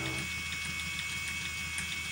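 Phoenix electric motor spinner running: a steady motor hum with a constant high whine as the flyer and bobbin spin.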